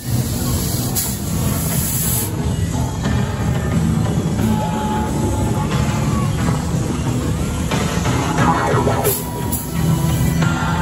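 Loud soundtrack music with a steady heavy bass from a light show's sound system.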